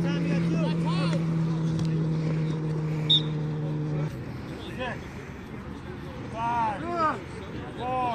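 A motor's steady hum holds one pitch, then cuts off abruptly about halfway through. Over it are players' calls and shouts across the field, and there is a short, sharp high peep about three seconds in.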